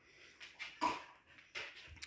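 Faint, short whimpers from a sleeping Siberian husky puppy, about half a second to a second in, over quiet room tone.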